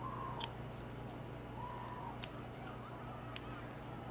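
Small dissecting scissors snipping through a preserved frog's skin and muscle: three faint, sharp clicks spaced a second or more apart over a steady low hum.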